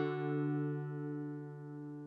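Background music: a strummed guitar chord left ringing and slowly fading away.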